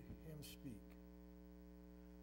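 Steady electrical mains hum, with a few quiet spoken syllables in the first second.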